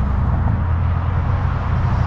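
A vehicle engine idling steadily, an even low rumble.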